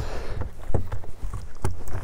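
Smallmouth bass flopping on a boat's carpeted deck: a few short thumps over a steady low rumble.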